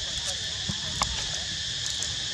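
Steady, high-pitched chorus of insects droning, with a brief faint click about a second in.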